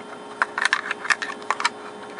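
Black plastic project box being pulled open and handled: a quick run of light plastic clicks and rattles.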